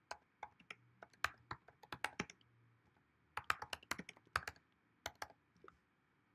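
Typing on a computer keyboard: two quick runs of keystrokes with a short pause about two and a half seconds in.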